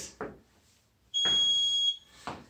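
Interval timer's single long electronic beep, a steady high tone lasting just under a second, starting about a second in: the signal that the 30-second work interval is over.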